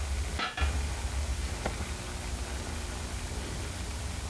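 Oxy-acetylene torch flame hissing steadily as it melts the edges of two steel disc blades together in a fuse weld, with a low hum underneath. The sound drops out briefly about half a second in.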